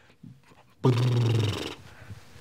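A man's voice holding one drawn-out word at a steady low pitch with a rough, growl-like edge for almost a second, starting about a second in, then trailing off into breath.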